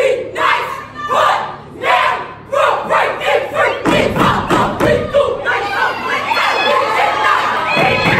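A step team shouting a chant together in short phrases, punctuated by stomps and claps on a wooden stage, over crowd noise. From about four seconds in the stomping and clapping get denser.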